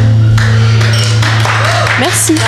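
A live rock band's held final chord cuts off, leaving a low bass note ringing, and audience applause starts about half a second in.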